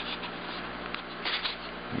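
Faint scratches and rustles of hands handling a styrofoam pinning block, a few short scrapes with a small cluster past the middle, over a steady low hum.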